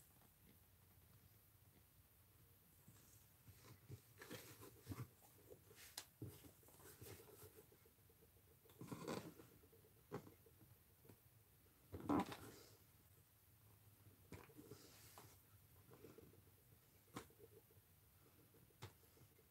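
Faint, scattered short scrapes and small clicks of a hand lino-cutter gouge carving a soft stamp block. The two loudest come about nine and twelve seconds in.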